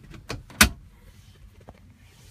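Car centre console storage lid being shut: a couple of light clicks, then one sharp snap about half a second in as it latches, and a faint click near the end.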